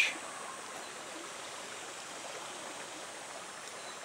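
Steady rushing of a shallow river flowing over rocks, at a low, even level.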